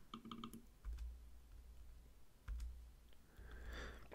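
Faint clicking of a computer mouse and keyboard as text is selected and deleted from web form fields. A quick run of clicks comes near the start, then single clicks about one and two and a half seconds in.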